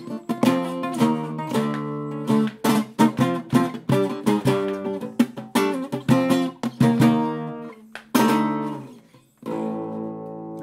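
Andalusian Guitars AG Barbero cutaway flamenco guitar played solo: chords strummed and plucked in quick succession. About eight seconds in, one chord is left to ring and fade, and a fresh chord sounds just before the end.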